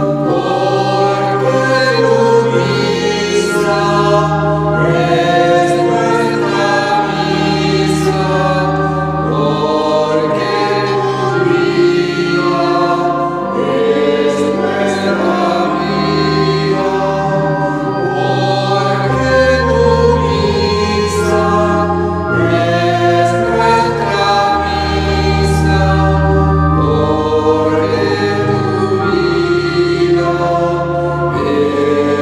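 Choir singing a slow offertory hymn over long held low accompaniment notes.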